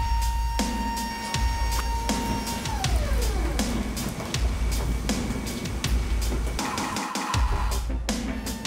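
Background music with a deep bass and a regular beat; a held high tone slides down in pitch about three seconds in.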